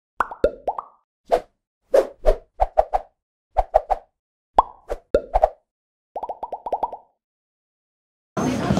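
Cartoon-style plop and pop sound effects accompanying an animated logo intro: short pitched pops in irregular groups of one to three. Near the end comes a quick run of about eight pops lasting under a second, and then the sound stops.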